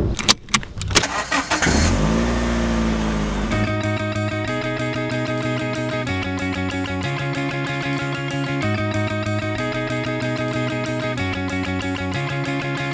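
A few sharp clicks, then a car engine starting, its revs rising and settling over the next couple of seconds. From about three and a half seconds in, music with a steady beat takes over.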